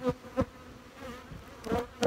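Honey bees flying around the hives, a steady buzzing hum, broken by a few sharp taps: two in the first half-second and one near the end.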